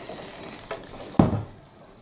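A single thump about a second in: a plastic pump-up garden sprayer being set down on a table.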